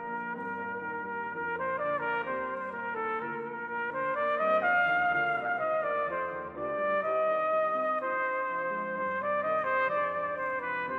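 A solo cornet plays a melody of held notes stepping up and down, over a brass band accompaniment, growing slightly louder about four seconds in.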